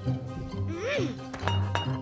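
Cartoon soundtrack: background music, a brief rising-and-falling vocal sound from a character, and a single bright glassy clink about one and a half seconds in.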